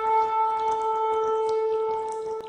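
Shofar (ram's horn) blowing one long blast held at a steady pitch.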